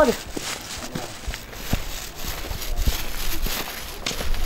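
Footsteps on a paved sidewalk: light, irregular scuffs and knocks over a low rumble from the moving, handheld camera microphone.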